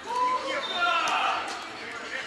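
People's voices calling out on a sand volleyball court, with a few faint knocks of a volleyball being hit.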